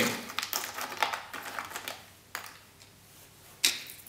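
Chunks of ice clicking and crunching against each other and the plastic tub as hands dig into and shift them. A quick run of clicks in the first two seconds, then a single click past the middle and a short crunch near the end.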